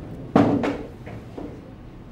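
A sharp knock about a third of a second in, then two fainter knocks: the just-pocketed six ball dropping through the pool table's pocket.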